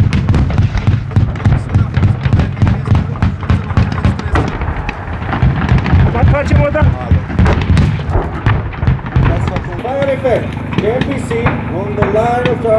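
A rapid, continuous crackle of gunfire and explosions over a deep rumble, from a battlefield exercise whose blasts are partly simulated effects. The rumble eases about ten seconds in.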